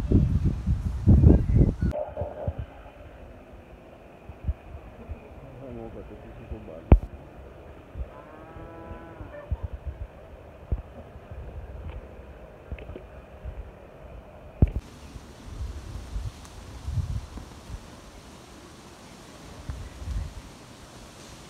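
Outdoor ambience with low rumbling wind on the microphone and scattered handling knocks. A faint distant voice is heard about eight seconds in.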